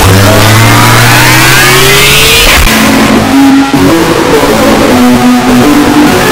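Heavily distorted, clipped audio: a rising whine over a steady low drone for about two and a half seconds, then short held tones stepping in pitch like a tune.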